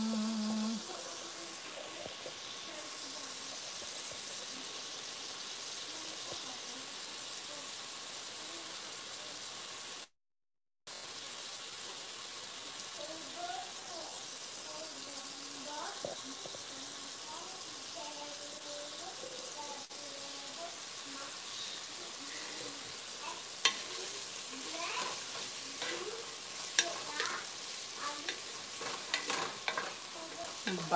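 Shrimp frying in a pot with a steady sizzling hiss, which drops out briefly about a third of the way in. From about two-thirds of the way in, a wooden spoon knocks and scrapes in the pot as the shrimp are stirred, more busily toward the end.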